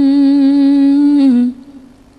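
A woman singing a hamd unaccompanied, holding one long steady note that dips slightly in pitch and breaks off about a second and a half in.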